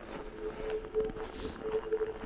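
Footsteps crunching on packed snow at a walking pace, about two steps a second, over a steady humming tone.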